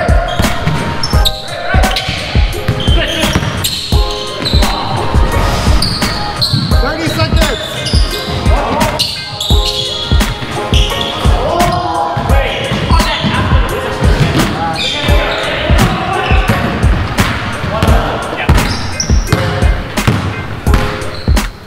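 Basketball bouncing repeatedly on a hardwood gym floor during play, with short high squeaks and players' voices, all echoing in the hall.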